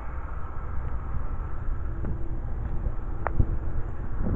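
Wind rumbling on a handheld camera's microphone outdoors, a steady low rumble, with a single sharp click about three seconds in.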